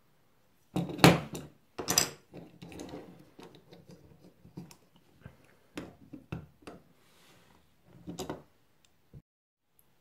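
Hard plastic parts of a DC circuit breaker being handled: its case and detached lid clack, with two sharp knocks about one and two seconds in, then lighter scattered clicks and rattles.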